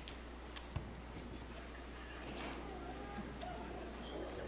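Quiet hall room tone with a low steady hum, a few sharp clicks in the first second, and faint murmuring voices in the second half.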